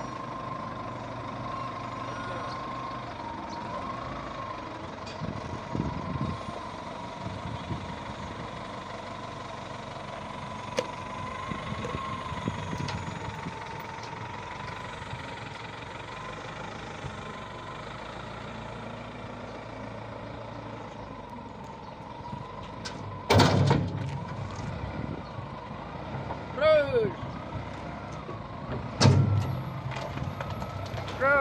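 Diesel engine of a Caterpillar wheel loader running under load as it tows a dead tank truck on a chain, with a steady, slightly wavering whine. Two loud bursts of noise break in near the end, along with shouted voices.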